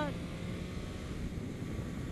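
Sport motorcycle engine running while accelerating gently, heard from the onboard camera under steady wind noise on the microphone.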